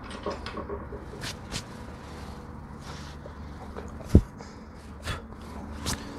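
Light clicks and knocks of small objects being handled, with a single dull thump about four seconds in.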